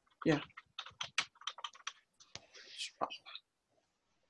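Typing on a computer keyboard: a quick run of keystrokes about a second in, then a few more clicks near the three-second mark.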